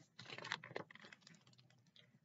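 A page of a picture book being turned by hand: a few faint paper rustles and crinkles, mostly in the first second.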